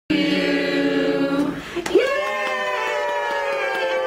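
Voices singing in long held notes: a lower note for the first second and a half, then, after a sharp click about two seconds in, a higher note held steadily.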